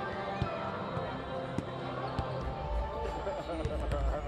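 Basketballs bouncing on a hardwood court: irregular sharp thumps, a few at first and more often in the last second or so, over background voices and faint music.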